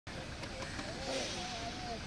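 City street traffic on a wet road: a steady low rumble and hiss of vehicles, with faint voices in the background during the second half.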